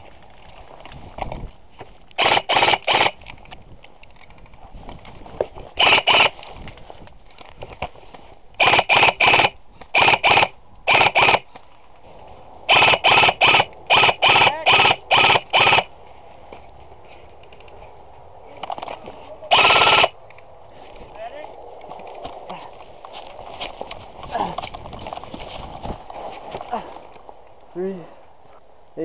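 Systema PTW airsoft rifle firing close to the microphone: groups of two to ten quick shots, then one short continuous full-auto burst about two-thirds of the way through.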